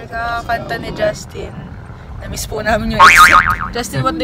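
Young women's voices in a car cabin, with a loud, high, wavering sound about three seconds in, over the car's steady low road rumble.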